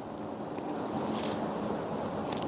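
Steady low background noise between sentences: room tone with a faint hum, no distinct event.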